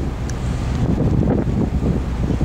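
Wind buffeting the microphone on an open ferry deck, a dense, gusting low rumble.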